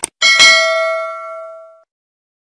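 A short click, then a notification-bell sound effect: one ding with several ringing tones that fades out over about a second and a half.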